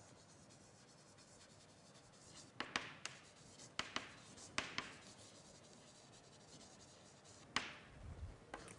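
Writing on a board during a lecture: faint strokes with a few sharp taps spread through, the loudest near the end.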